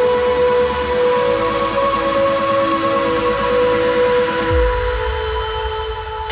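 Uplifting trance breakdown: a sustained synth chord under a rising white-noise sweep. About four and a half seconds in, the sweep cuts off and a deep bass boom falls in pitch.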